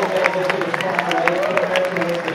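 Audience clapping, with separate hand claps standing out, as a man talks over it.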